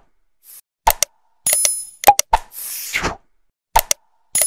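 Animated like-and-subscribe sound effects: a pair of sharp clicks, then a bright bell-like ding, more clicks and a whoosh. Clicks begin the sequence again near the end.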